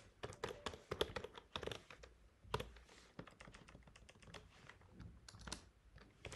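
Computer keyboard typing: soft, quick, irregular keystroke clicks, dense for the first couple of seconds and then sparser, as a file name is typed.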